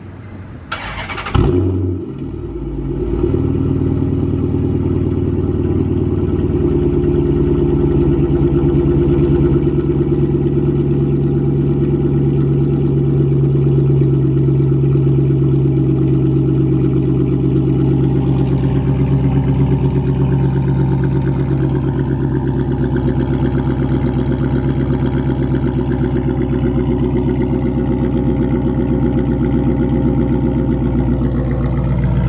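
A 2014 Dodge Challenger R/T's stock-exhaust 5.7-litre HEMI V8 is warm-started. There is a brief crank and rev flare about a second in, and then it settles into a steady idle.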